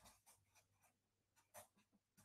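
Faint strokes of a felt-tip marker writing on paper: a quick run of short scratches, one slightly louder near the end.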